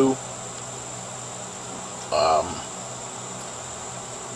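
Steady high-pitched buzz of insects, like a cricket chorus, with a brief spoken syllable about two seconds in.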